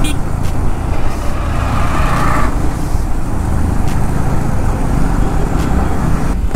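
Motorcycle riding in city traffic: steady engine and road noise, with a louder hiss swelling from about one second in and stopping suddenly at about two and a half seconds.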